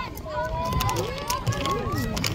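Indistinct high-pitched shouts and chatter of young voices calling out, with a steady low rumble underneath.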